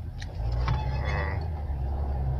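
Steady low road and engine rumble heard inside a moving car's cabin, growing louder about half a second in.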